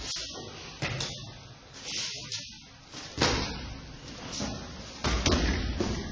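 Feet and bodies thudding on a padded martial-arts mat during an aikido throw: several sharp thuds, the loudest about three seconds in, then a heavier, longer thud about five seconds in as the partner is taken down onto the mat.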